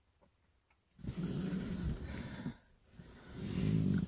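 A person's long sigh, breathy and partly voiced with a low hum, followed about a second later by a rising breath in.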